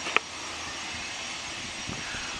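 Embraer Legacy 500 business jet's twin turbofan engines running at taxi power: a steady, even rushing hiss. A brief click comes just after the start.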